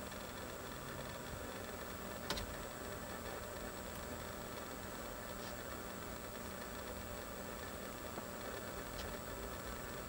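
Faint, steady hum and hiss of a Toyota Corolla's four-cylinder engine idling, heard from inside the cabin. There is a single soft click a little over two seconds in.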